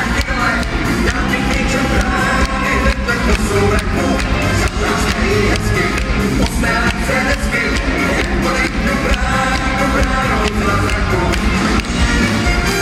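A live band playing on stage with a steady drum beat, heard from within the audience in a large hall.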